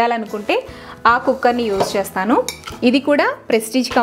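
A woman talking, with several sharp metal clinks and knocks, mostly in the second half, as a stainless steel pressure cooker is lifted from among other pots and pans.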